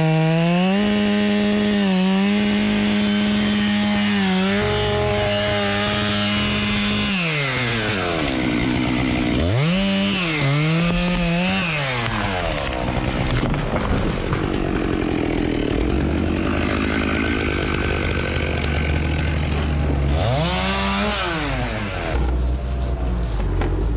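Two-stroke gas chainsaw felling a tree. It is held at high revs for the first several seconds, drops about seven seconds in, then revs up again. Through the middle it runs lower and rougher in the cut, and it revs once more and falls off near the end.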